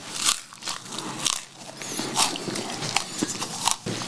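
Chewing a mouthful of kkultarae (Korean dragon's beard candy) rolled with crushed almonds, close to the microphone: irregular crunches and small mouth clicks.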